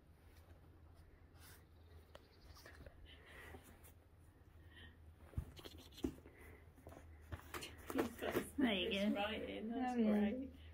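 Faint scratching of polecats digging in loose soil in a plastic box, with a couple of soft knocks midway. From about eight seconds in a person's wordless voice takes over and is the loudest sound.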